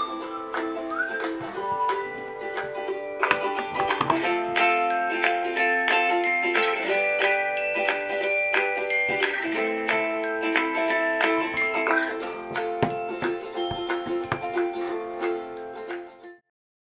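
Upbeat ukulele music playing from an iPhone's built-in speaker. It gets clearly louder about four seconds in, while the phone stands in the Soundvase, a passive plastic horn that boosts the phone's sound without power, and drops back to the quieter bare-phone level about twelve seconds in.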